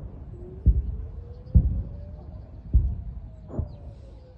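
Distant explosions: four dull, low thuds about a second apart, from shells landing on a wooded ridge. A faint thin whine slowly rises and then falls in pitch behind them.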